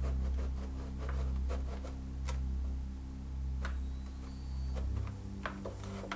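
A low steady electrical hum, changing in character about five seconds in, with a few light clicks and taps as a gloved hand holds a magnet against the plastic back of an LCD monitor.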